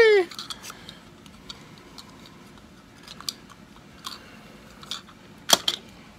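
Hard plastic pieces of a Mr. Potato Head Transformers toy clicking faintly as they are handled, with one sharp click near the end.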